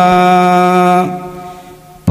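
A single voice chanting a Buddhist devotional chant, holding one long steady note for about a second, which then fades away.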